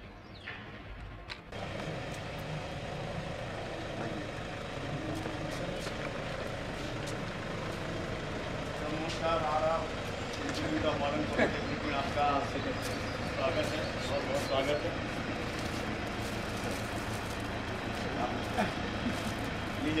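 Steady outdoor background noise that comes in suddenly about a second and a half in. Men's voices talk indistinctly over it, mostly in the middle, with scattered faint clicks.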